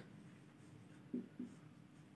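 Marker pen writing on a whiteboard: faint strokes, with two short, slightly louder strokes about a second in.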